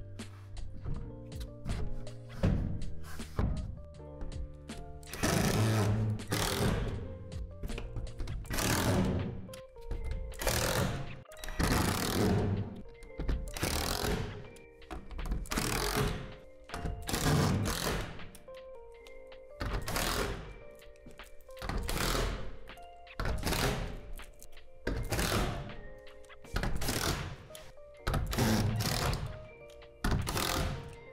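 Cordless impact driver driving screws into plastic shed panels in short bursts, about one every second and a half, over background music. In the first few seconds there are a few knocks as the plastic panels are handled.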